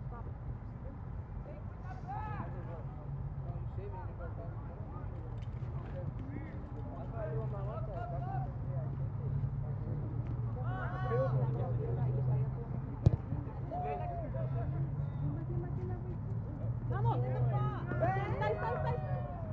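Distant shouts and calls from players and people along the sideline of an outdoor soccer game, coming every few seconds over a steady low hum. One sharp knock stands out about thirteen seconds in.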